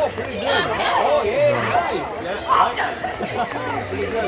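Overlapping chatter of several people talking, not close to the microphone.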